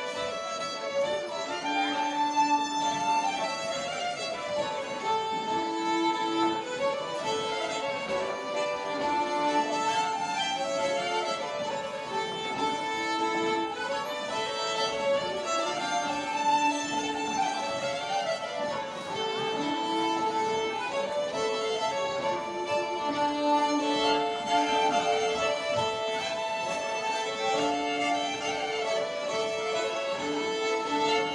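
A live Swedish folk dance band playing an old-time dance tune, with fiddles carrying the melody over accordion accompaniment. It plays on without a break.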